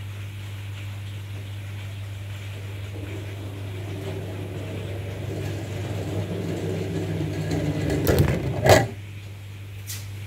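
A small rubber-band-powered car with CD wheels and loose 3D-printed and plastic parts rolling and rattling across a laminate floor, growing louder as it comes closer, then a sharp knock just before the end as it runs into something.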